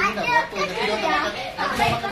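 Children's voices, several talking and playing at once, overlapping one another.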